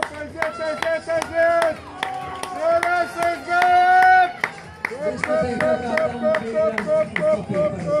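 Spectators cheering on runners with a rhythmic run of short, high-pitched shouts, about three a second, over sharp clapping. The shouts stretch into a few longer drawn-out calls in the middle, then pick up the quick rhythm again.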